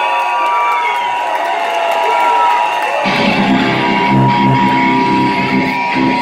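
A concert crowd whooping and cheering over a steady high tone from an Emergency Broadcast System test sample played over the PA. About three seconds in, a live heavy metal band comes in loud with distorted electric guitars.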